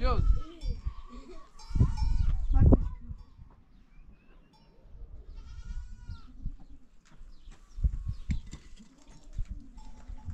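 Goats bleating in several separate calls, with a man calling "go, go" at the start and a few sharp knocks about eight seconds in.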